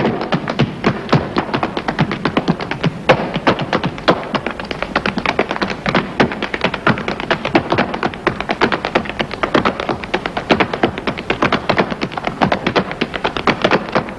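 Rapid, irregular sharp taps and clicks, several a second, going on steadily without a tune.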